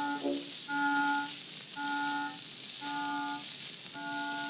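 Early acoustic-era disc recording with orchestra: a run of repeated held notes on the same pitch, about one a second, over steady surface hiss from the old record.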